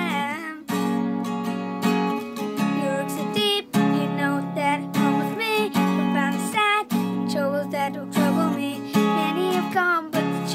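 A boy singing solo, accompanied by his own acoustic guitar strummed in steady chords, with a new strum about every second.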